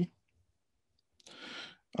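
A man's short in-breath, a soft noisy rush lasting about half a second, after a second of dead silence.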